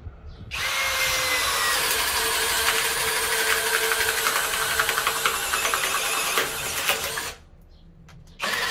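Skil PWRCore 20V brushless cordless drill boring a 36 mm spade bit into a pine beam: steady motor whine under load with the crackle of wood being cut. It starts about half a second in and stops about a second before the end.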